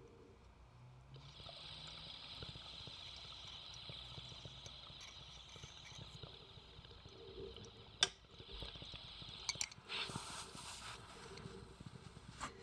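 Faint bubbling of water in a glass dab rig as a hit is drawn through it, with a steady hiss of air from about a second in. A sharp click comes about eight seconds in, then a second, shorter burst of bubbling hiss near the end.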